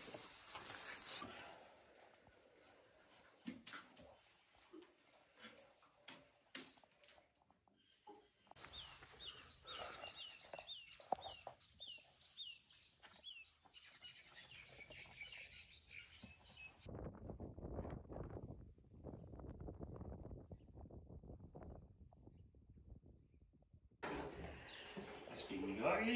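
A bird singing a steady series of short, falling chirps, about two a second, for about eight seconds in the middle, over faint background. Before it there are scattered faint clicks, and after the song stops a soft low rushing noise takes over.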